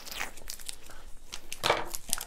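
Foil-wrapped package of self-hardening clay crinkling and rustling as it is cut open with scissors and handled, in a string of irregular crackles with a louder crunch near the end.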